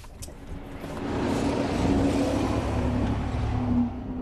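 Car engine and road noise heard from inside the cabin, building over the first second as the car picks up speed and then running steadily, with a low rumble and a steady hum.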